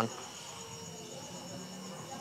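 Faint, steady high-pitched chirring of insects in the background, pulsing quickly and evenly.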